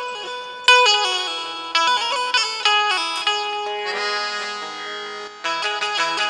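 Indian banjo (bulbul tarang), a keyed plucked-string instrument, playing a melody: a few plucked notes that ring and fade, then near the end a fast run of rapidly repeated picked strokes.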